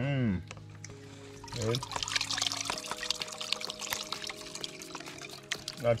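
Boiled ackee and its cooking water poured from a metal pot into a plastic strainer, water splashing and trickling through the mesh into the bucket below as the ackee is drained; the pouring starts about one and a half seconds in.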